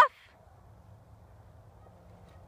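The very end of a woman's drawn-out, rising word cuts off right at the start. After it comes only faint outdoor background: a low rumble with a faint steady hum.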